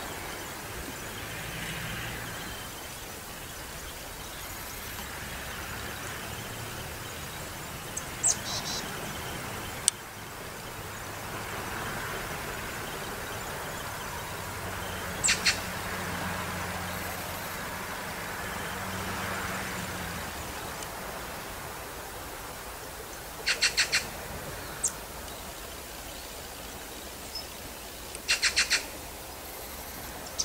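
Birds chirping outdoors: a few short, high calls and quick runs of three or four chirps, heard over a steady background hiss with a faint low hum through the middle.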